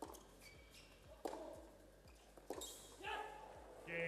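Tennis ball struck back and forth with rackets in a rally, three hits about a second and a quarter apart. Near the end the hits stop and voices follow.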